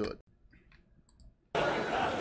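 A few faint clicks in near silence, then about one and a half seconds in a steady outdoor noise haze from the sketch's soundtrack starts abruptly and stays.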